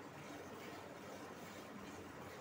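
Milk squirting from a buffalo's teats into a metal pail during hand milking: a faint, steady hiss.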